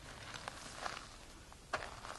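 Faint rustling, with one sharp click near the end.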